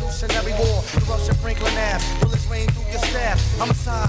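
Hip hop track: a steady drum beat of about two hits a second over a deep bass line, with a voice rapping over it.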